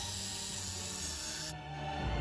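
Electric nail drill with a fine sanding bit filing an acrylic nail: a steady rasping whir. About a second and a half in, it gives way to background music.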